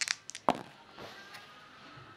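Two ten-sided percentile dice rolled onto the paper pages of an open book: a few sharp clicks and taps in the first half-second.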